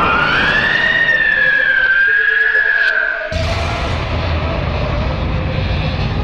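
Ghostly wailing sound effect: one long pitched 'oooo' that glides upward, then holds with a slight waver and stops about three seconds in. A low rumbling drone follows.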